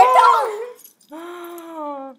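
A whimpering cry: a short wavering whine, then a longer drawn-out whine that slowly falls in pitch and stops.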